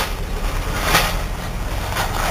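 Outdoor background noise: a steady low rumble with a brief swell of hiss about a second in.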